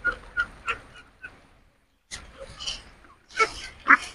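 Young ducks giving several short, high peeping calls, with a louder call near the end. About two seconds in there is a rustle as the mosquito net over their pen is handled.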